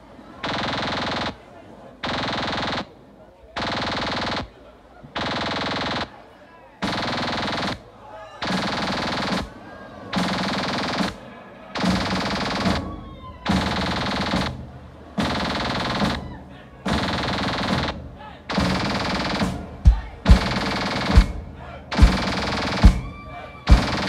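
Live band playing a stop-start passage: loud blasts of full band sound about a second long, repeating every second and a half with short gaps, each later blast swelling. Hard bass drum hits join in near the end.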